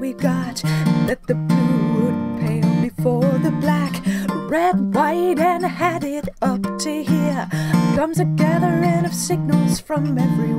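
Acoustic guitar with a capo, strummed, with a woman singing over it.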